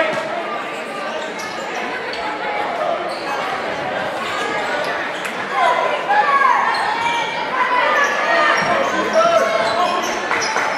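Basketball bouncing on a hardwood gym floor during live play, in a hall that echoes, with voices shouting and talking throughout. The shouting is loudest from about halfway through.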